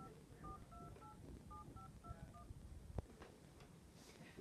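Smartphone keypad dialing tones: a quick run of about ten short two-tone beeps, faint, as a phone number is keyed in, then a single click about three seconds in.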